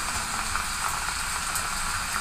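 Water mister nozzle spraying a fine, steady hiss of mist onto a tray of sphagnum moss and perlite potting medium, wetting it so the medium settles.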